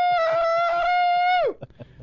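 A man's long, high 'Woooo' yell into a handheld microphone, held on one steady pitch and cut off about one and a half seconds in.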